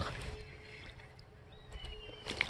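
A Pflueger President XT spinning reel being wound in quietly while a small hooked fish is played, with a thin steady hum over a low rumble of creek water and wind.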